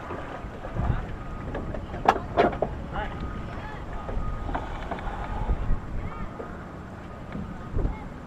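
Wind rumbling on the microphone in the open cockpit of a Searey amphibian floating on the water, engine off, with two sharp knocks about two seconds in.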